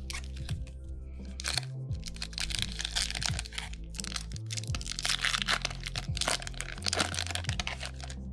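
Foil wrapper of a Yu-Gi-Oh! booster pack crackling and crinkling as it is torn open and handled. The crackling starts about a second and a half in and runs in quick runs until just before the end, over background music.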